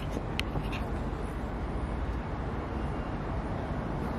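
City street ambience: a steady low hum of traffic, with a couple of light clicks about half a second in.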